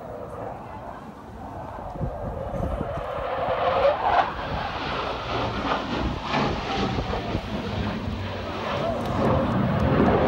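Blue Angels F/A-18 jet's engine noise as the jet passes low over the airfield, building from about two seconds in and loudest near the end.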